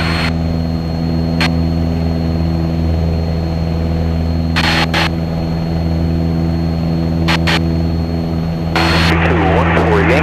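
Cessna 177 Cardinal's piston engine and propeller droning steadily in the cabin during the climb after takeoff. A few short clicks are heard through it.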